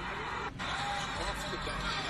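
Basketball game broadcast audio playing at low level: steady arena crowd noise with faint commentator speech, with a brief dip about half a second in.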